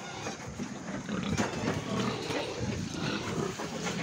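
Pigs grunting in a livestock truck's crate, a low, rough, irregular sound.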